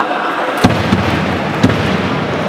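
Three loud booming thumps that echo in a large hall: the loudest about half a second in, a weaker one near one second, and another just past a second and a half.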